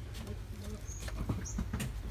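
Two short high-pitched chirps from a small animal, about a second in and again half a second later, over low rumbling handling noise with a couple of knocks as the camera is moved.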